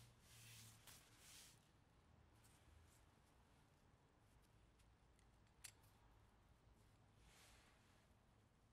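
Near silence, with a few faint soft scrapes and one small click about five and a half seconds in, from a socket and extension being turned by hand to unthread the front differential fill plug.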